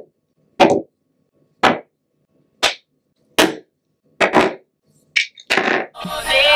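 Makeup products (compacts, lipstick tubes, a brow pencil, a dropper bottle) being set down one at a time on a hard tabletop. About seven short knocks come roughly a second apart, the last few closer together.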